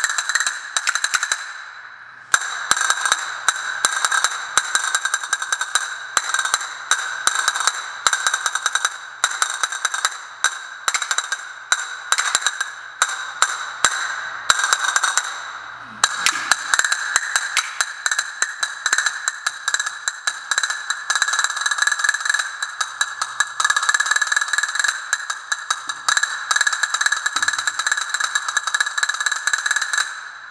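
Two pairs of Spanish castanets played together in fast rolls and sharp clicks, with a short break about two seconds in and another about halfway through.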